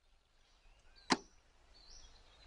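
A single sharp click about a second in, over faint room noise with faint high chirps in the background.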